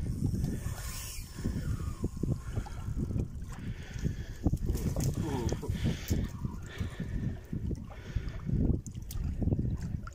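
Wind buffeting the phone's microphone in an uneven low rumble, with water lapping against the rocky shore.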